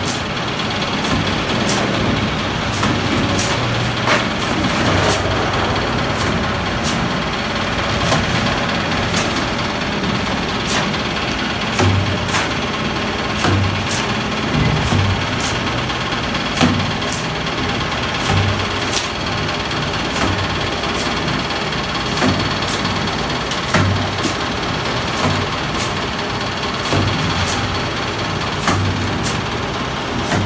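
Mason's trowel repeatedly scraping up sand-cement mortar from a heap and throwing it onto a brick wall, a short click or scrape about once or twice a second, over a steady engine-like hum of machinery.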